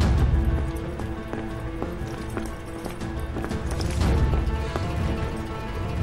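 Dramatic film score of sustained tones over a deep low swell, with a run of sharp footfalls on hard ground clicking irregularly through it.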